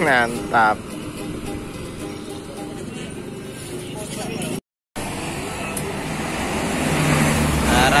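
Roadside traffic with motorcycles going past, broken by a brief dropout. Near the end a coach bus's engine rumble swells as it draws close.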